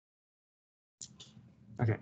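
Dead silence for about the first second, then faint noise and a man's voice saying 'OK' near the end.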